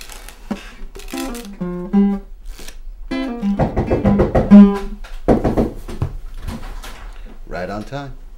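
Acoustic guitar being strummed, with a man's voice singing along in held notes. The playing is loudest a few seconds in, then thins out.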